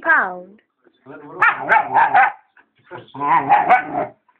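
A dog barking in two quick runs of several barks each, about a second in and again about three seconds in, after a falling cry at the very start.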